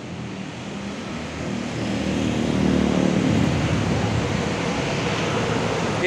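A motor vehicle running close by, engine rumble and road noise swelling to a peak about halfway through and staying fairly loud afterwards.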